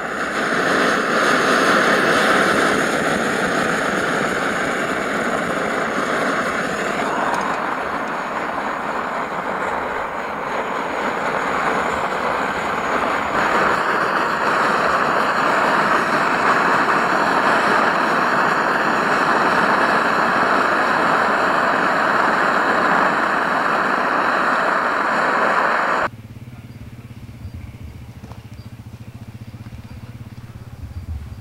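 Liquid-fuel camping stove with a built-in tank, just lit and burning with a steady, loud hiss. The sound cuts off suddenly near the end, leaving quiet outdoor ambience.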